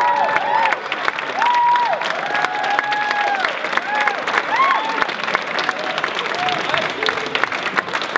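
Audience applauding, with whoops and cheering voices rising and falling over the clapping.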